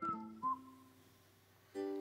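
Soft background music with plucked strings and a whistled tune. It dies away within the first half second, leaving a quiet stretch, and comes back just before the end.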